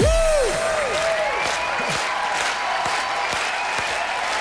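Studio audience applauding as the dance track stops, with a few sliding tones from the end of the music in the first second or two.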